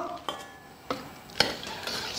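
A metal ladle knocking against a wok three times, the sharpest near the end, as sliced scallion and ginger go into hot chicken fat and rapeseed oil, with a faint sizzle of frying.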